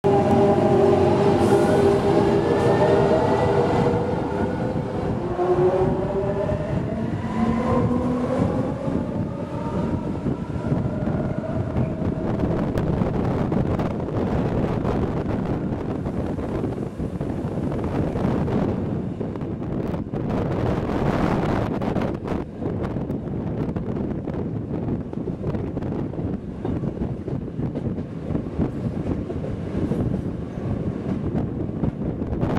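Rhaetian Railway Bernina line electric train heard from on board as it moves off: several whining tones climb in pitch over the first ten seconds above a steady rumble. Then it settles into steady running noise, with a run of sharp clicks over rail joints or points about two-thirds of the way through.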